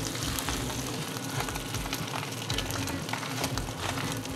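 Bone-in ribeye steak searing in butter in a very hot cast-iron skillet: a steady sizzle with scattered crackles.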